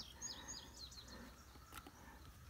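Faint bird chirps: a quick run of short, high notes, each sliding downward, in the first second, over quiet outdoor background. A single faint click comes near the end.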